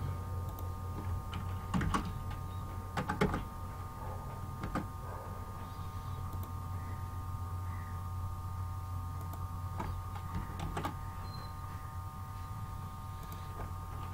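A few scattered clicks of a computer keyboard as code is typed, over a steady electrical hum with a faint high whine.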